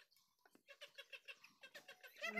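Very faint chickens clucking in quick, short notes, close to silence, starting about a third of the way in.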